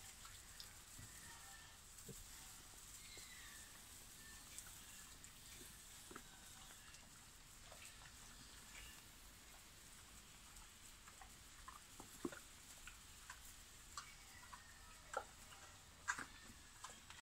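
Near silence with faint rustling and scattered small clicks from young wild boar piglets rooting in straw; a few sharper clicks come near the end.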